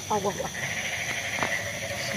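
A person's voice giving a short, wavering, wordless cry in the first half second, followed by a steady high-pitched drone of night insects.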